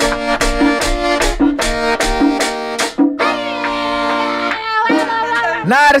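Live merengue típico band led by accordion, with tambora drum, playing the song's closing bars. The rhythm stops about three seconds in on a held final chord, which fades out a second or so later.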